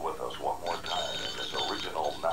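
A voice speaking from a TV commercial soundtrack. A high, bell-like ringing tone sounds over it for about a second in the middle.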